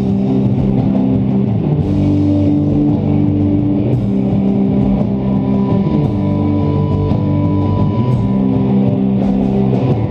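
Rock band playing live without vocals: electric guitars and bass guitar over a drum kit, holding chords that change every second or two.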